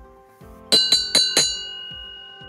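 A short bell-like chime sting: four quick struck notes about three-quarters of a second in, ringing on afterwards.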